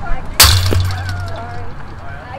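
A single sharp crack about half a second in, followed by a low rumble lasting about a second, with voices chattering in the background.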